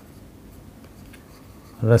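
Faint scratching and light tapping of a stylus on a pen tablet as a word is hand-written, in a small quiet room; a man's voice starts right at the end.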